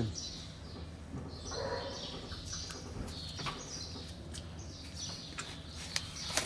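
Small birds chirping again and again, short high calls, some falling in pitch, over a steady low hum.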